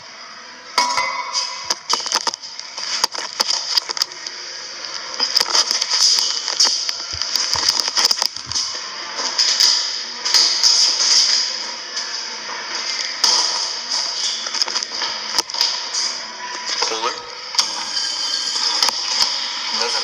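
Indistinct background voices and music under a steady hiss, broken by many sharp clicks and rustles of handling.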